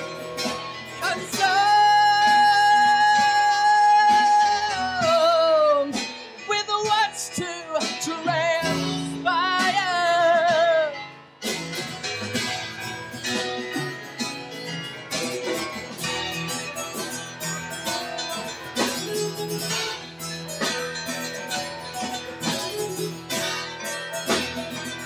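Solo male voice and guitar: a long held sung note that breaks into wavering vocal runs, then the guitar carries on alone for the second half, strummed and picked.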